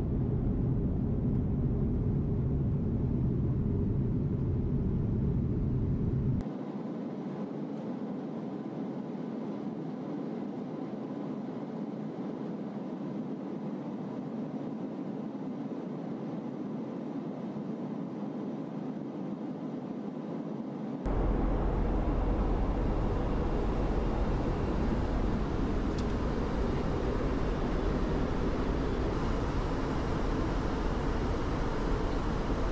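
Steady in-flight jet aircraft noise, engine and airflow rumble as heard on board the tanker. It drops abruptly about six seconds in, losing its deep rumble, then returns louder with a strong deep rumble about 21 seconds in.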